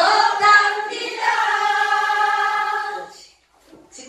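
A group of voices singing a trot song together, led by a woman singing into a microphone. About a second in they hold one long steady note, which ends a little after three seconds in.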